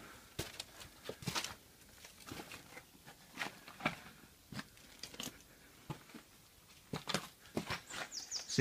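Footsteps crunching over brick rubble and charred debris: faint, irregular crunches and clicks.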